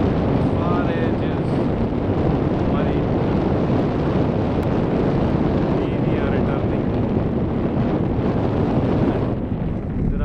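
Wind buffeting the microphone: a steady, loud rumble that eases slightly near the end, with faint voices in the distance.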